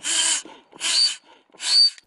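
Bellows foot pump being stepped on three times to inflate an inflatable kayak. Each stroke is a hiss of air that ends in a short high whistle, the weird sound the pump makes in use.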